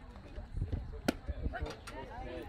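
A pitched baseball smacks into the catcher's mitt about a second in, a single sharp pop, followed by a few fainter clicks.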